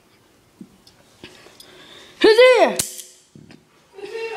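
A short, high-pitched voice sound about halfway through whose pitch rises and then falls, cut off by a sharp click.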